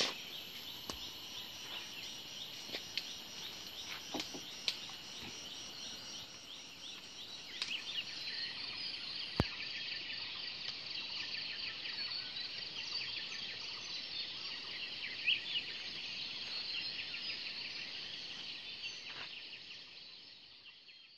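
A chorus of insects: a steady high buzzing with a fast, even pulse that grows fuller about eight seconds in. A few sharp clicks and knocks fall through it, the sharpest about nine seconds in.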